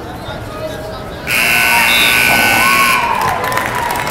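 Scoreboard buzzer sounding once, a loud steady tone about two seconds long that starts a little over a second in and cuts off suddenly, marking the end of the wrestling match. Crowd voices run underneath it and carry on after it.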